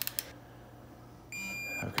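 Snap-on digital torque wrench giving a single steady electronic beep about half a second long, the signal that the bolt has reached its 14 N·m target torque.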